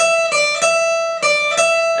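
Cort acoustic guitar playing a lick on the high E string, plucked notes alternating between the 12th and 10th frets (E and D, a whole step apart): five ringing notes in quick succession.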